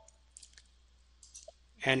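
Computer mouse clicks: two pairs of quick, sharp clicks about a second apart, the save command and the confirmation of a pop-up prompt in the software. A man's voice starts near the end.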